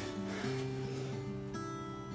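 Soft background music, a plucked acoustic guitar playing a few long held notes.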